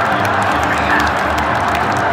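Large football stadium crowd cheering in a loud, steady roar.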